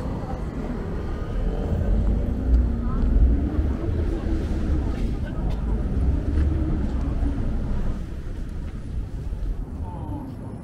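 Night-time city street ambience: passers-by talking over a low rumble of traffic, which is heaviest in the middle and eases near the end.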